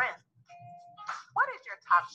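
A voice speaking in short phrases, with a single steady tone, like a chime, lasting about half a second from about half a second in.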